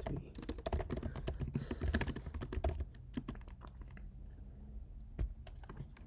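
Fast typing on a computer keyboard: quick runs of keystrokes for about three seconds, then a few scattered keys, with one sharper key press near the end.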